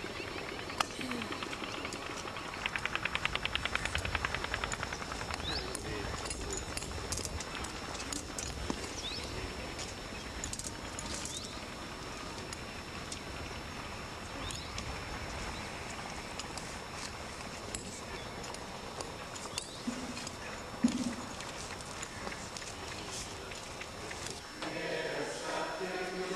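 Outdoor ambience with small birds giving short chirps every few seconds and a rapid rattling trill a few seconds in. A sharp knock comes near the end.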